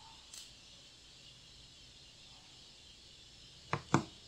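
Quiet room hiss broken by a soft click about a third of a second in and two sharp clicks in quick succession near the end: computer mouse clicks.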